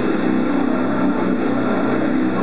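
Distorted electric guitar, a Slammer by Hamer Explorer, playing a heavy metal riff.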